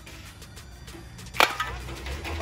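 A Plasti Dip aerosol can is set down on a tarp and knocks against a second can about one and a half seconds in: one sharp metal clink with a brief ring. Background music with a low bass beat plays throughout.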